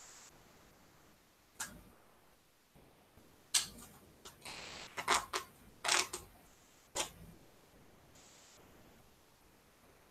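Foundation paper being torn away along the stitching of a paper-pieced quilt block: several short, sharp rips between about one and a half and seven seconds in, one of them drawn out for about a second. The small stitch length has perforated the paper so that it tears off easily.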